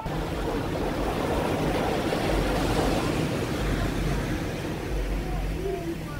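Small waves washing onto a sandy beach: a steady rush of surf with an uneven low rumble underneath.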